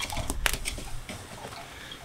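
Glowing charcoal briquettes being stirred and turned with a poker in a kettle grill: a few sharp clicks and scrapes, the loudest about half a second in, then a fainter rustle that fades.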